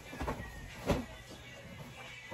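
Two soft thumps as large plush stuffed animals are tossed down onto a bed, a small one just after the start and a louder one about a second in, over quiet background music.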